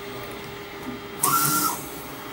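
Mimaki UJF-3042 MkII e UV flatbed printer running a print job: a low steady hum, then a little over a second in a brief whine with a hiss as the print carriage makes a pass.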